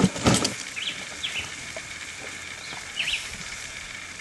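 A bird calling outdoors with short, repeated chirps, about six in four seconds, over a steady faint high hum. A brief rustle or knock comes just after the start.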